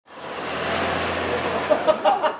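A motor vehicle driving past on a city street: tyre and engine noise with a low hum, rising quickly at the start, holding steady, and cutting off just before two seconds in.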